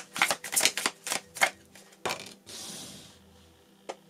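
Tarot cards being shuffled: a rapid run of crisp card clicks for about two seconds, then a short soft swish as a card is slid out and laid on the table.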